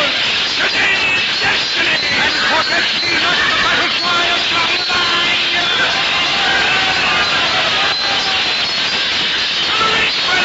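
Radio-drama music with a crowd of men shouting over it: a battle scene.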